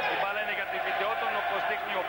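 A man speaking, the television commentator's voice over a basketball broadcast, with a steady tone running beneath it.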